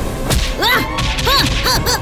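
Cartoon fight sound effects: a sharp crack, then a quick run of whip-like swishes, short rising-and-falling sweeps in pitch, as the animated hero flies at and strikes the monster.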